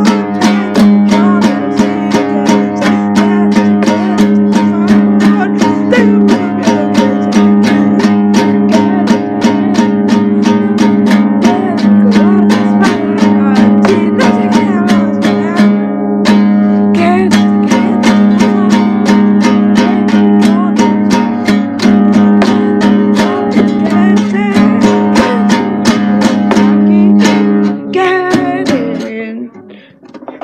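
Acoustic guitar strummed in a steady rhythm, played live with some singing, over a held low note. The playing breaks off about two seconds before the end.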